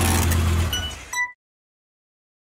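Sound effect of a car engine revving at the tail of a tyre squeal, dying away within the first second, with a short high ring before it cuts off suddenly just over a second in.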